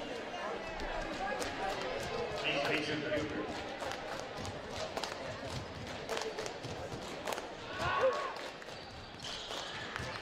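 Basketball bouncing on a hardwood gym floor as the free-throw shooter dribbles at the line, over the low chatter of a gym crowd.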